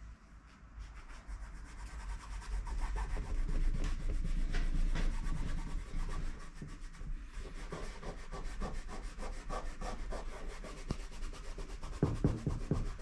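Nylon peel ply rustling and rubbing as hands handle it and smooth it down over carbon fibre cloth, a continuous crackly rustle that starts about a second in.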